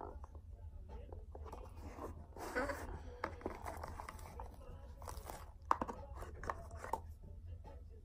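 Cardboard gift box and its paper being handled and opened by hand: scattered faint crinkles, rustles and small clicks, several sharper ones in the middle of the stretch.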